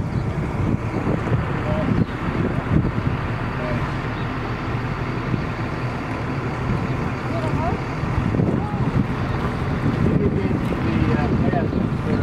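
Wind gusting across the camera microphone in a steady, rough rumble, with faint snatches of people's voices in the background.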